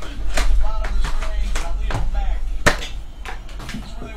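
Small cardboard card boxes being handled and set down onto a stack on a table, giving several sharp knocks and taps, the loudest a little under three seconds in. Voices from a television play underneath.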